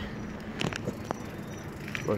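Bicycle riding noise: fat tyres rolling along the towpath, with a few light clicks and rattles in the first second.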